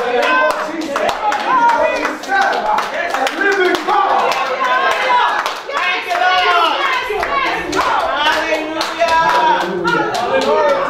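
Church congregation clapping steadily while many voices call out together in praise.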